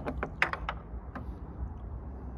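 Hand tools clicking and tapping: a metal wrench and socket on an extension knocking against the bolt and the parts around it in a pickup's engine bay. There is a quick irregular run of light clicks in the first second and one more a little after, over a low steady rumble.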